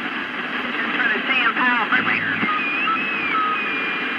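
CB radio receiving skip between transmissions: steady hiss and static, with a weak, garbled distant voice about a second in and thin, wavering whistle tones in the second half.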